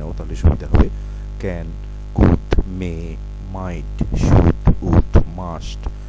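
Steady low electrical mains hum, with a voice speaking in short bursts over it.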